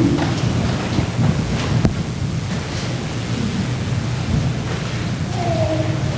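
Steady low rumbling background noise with a few soft knocks. Near the end a couple of held tones begin.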